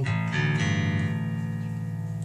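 Cort Curbow four-string active bass played through an amp with its onboard EQ's bass control turned up: a plucked note that rings on with a strong low end and slowly fades.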